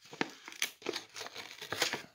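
Foil-lined paper lid of an instant noodle bowl being peeled back, giving irregular crinkling and tearing crackles.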